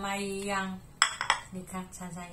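A woman's voice for under a second, then two sharp clicks about a third of a second apart.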